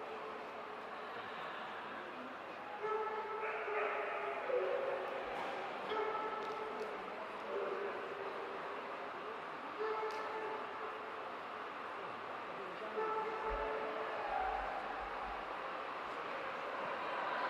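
Murmur of a large indoor hall with faint held tones at changing pitches, one after another every second or two, like distant music.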